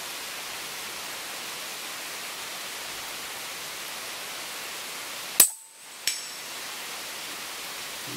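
A single shot from a Huben K1 .22 PCP air rifle, a sharp crack past the middle, followed under a second later by a fainter click with a short high ring: the slug striking a steel target about 100 m downrange. A steady hiss lies under both.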